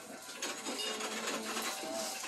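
Steady mechanical running of puffed-rice disc machines (ppeongtwigi) at a market stall, with a low murmur of distant voices; the machines' loud pops fall just outside this stretch.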